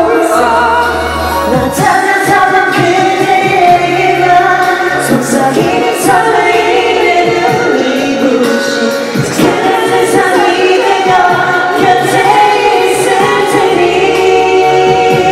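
Men singing a Korean pop song into handheld microphones, one voice after another, over a backing track with sustained bass notes.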